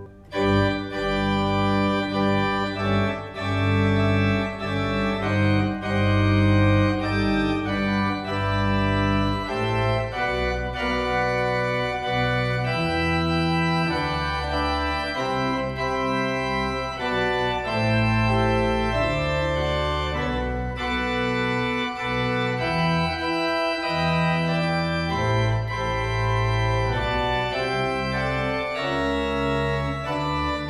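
Church organ playing a slow hymn accompaniment: sustained full chords on the manuals over held low pedal bass notes. It breaks off for a split second right at the start, then plays on.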